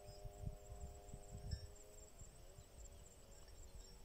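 Quiet outdoor ambience: a steady high insect trill, with a faint droning hum that wavers after about two seconds and then fades, over occasional low rumbles.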